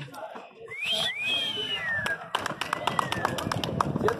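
Sharp knocks in quick succession in the second half, from the ball and hands striking during a frontón handball rally. Before them comes a high call that glides up and then down.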